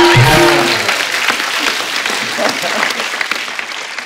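Studio audience applause that fades away over about three seconds, with a short burst of music and shouting voices in the first second.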